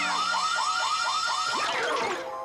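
Cartoon alarm-clock sound effect going off: a fast electronic warble of rising chirps, about four or five a second, ending in a falling whistle.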